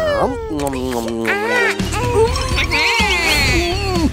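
Cartoon character voices making wordless, high-pitched vocal sounds that glide up and down in pitch, over background music.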